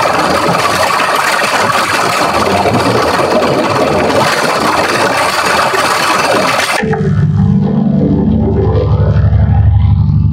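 Digitally distorted logo-jingle audio: a loud, harsh, noise-like wash that cuts off sharply about seven seconds in to a deep, buzzing drone.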